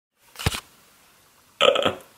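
A short thump about half a second in, then a brief loud non-word vocal noise from a man starting about one and a half seconds in.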